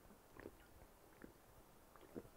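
Near silence with two faint swallowing sounds of a man drinking water, one near the start and another about a second later.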